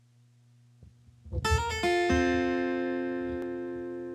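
Instrumental intro of the song's accompaniment: after about a second of faint hum, a guitar chord is strummed and a second chord rings out, slowly fading.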